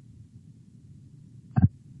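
A pause in speech: faint low steady hum of background noise, broken about one and a half seconds in by one brief vocal sound from the speaker.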